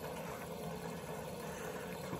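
Electric fuel pump running steadily in a homemade boat fuel tank, its flow driving a venturi jet pump that is drawing the last of the fuel out of the tank's front well: a faint, even run of pump and liquid flow.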